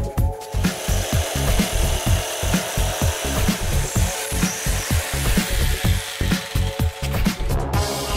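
Makita jigsaw cutting a tile-ready building board, a steady rasping saw noise that starts about half a second in and stops shortly before the end, heard under background electronic music with a steady beat.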